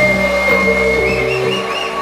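Electronic dance music from a club DJ set over a loud sound system. A high, whistle-like lead tone is held, then climbs in short swoops from about a second in, while the bass drops out briefly near the end.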